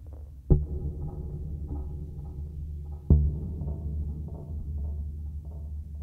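Behringer DeepMind 6 analogue polysynth playing a self-running ambient patch: a deep bass drone with a heavy, drum-like low pulse struck twice, about 2.6 s apart, and short plucked notes scattered above. The notes come from LFO-triggered looping envelopes and cross-modulation, with the synth's own effects, not from an arpeggiator or sequencer.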